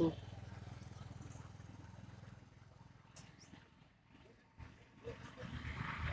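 Faint low hum of road traffic that fades over the first three seconds, then near quiet broken by a couple of soft clicks.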